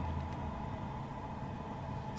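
Steady low background rumble with a faint, even hum and no distinct event.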